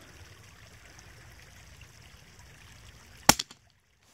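A single sharp rifle shot fired through a scope about three seconds in, standing out against a low steady hiss; the recording drops almost to silence right after it.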